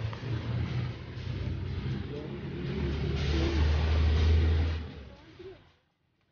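Road traffic noise heard from a moving vehicle on a highway: a low rumble of engines and tyres that swells to its loudest about three to five seconds in, as other vehicles pass close by, then cuts off near the end.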